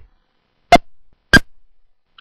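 Computer mouse button clicked twice, a little over half a second apart, each click setting a point on a curved outline in embroidery-digitising software.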